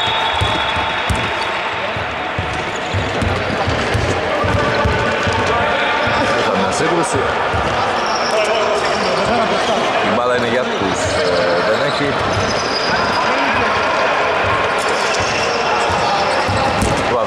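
Basketball bouncing on a hardwood court in a large hall, with players' voices calling out on court.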